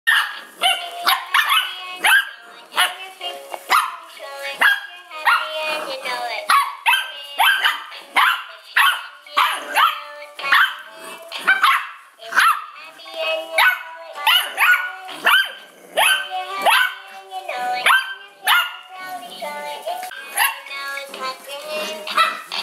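Bearded Collie puppies barking and yapping in short, high, sharp barks, one to two a second, over and over while they play.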